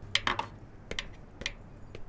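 Kitchen clatter: a handful of irregular sharp clicks and knocks of dishes and kitchenware being handled, one of them a plate set down on a table.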